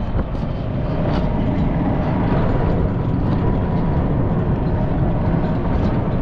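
Open-sided vehicle running steadily along a road: a constant engine drone with heavy low rumble of road and wind.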